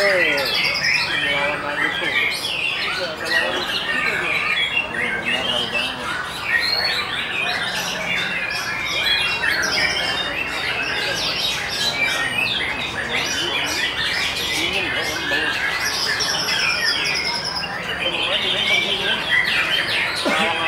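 White-rumped shama singing a continuous, varied song of whistles and fast chattering phrases, rich in mimicry, at contest pitch.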